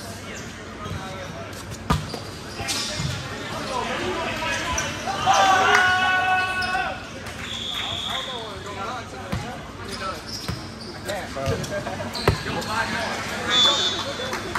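A volleyball rally in a large echoing gym. There are sharp smacks of the ball being struck, two of them standing out, and short high squeaks from sneakers on the court floor. Players shout over it, loudest about halfway through.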